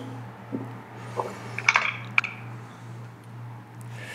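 A steady low electrical hum under room tone, with a few faint light clicks about a second and two seconds in.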